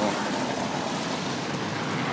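Steady street noise of road traffic, an even hum without distinct events.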